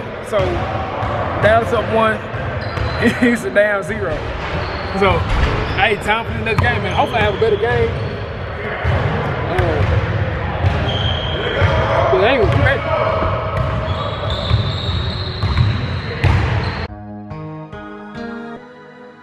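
Basketballs bouncing on a hardwood gym floor during a pickup game, with players' voices in the large gym hall. Music comes in about a second before the end.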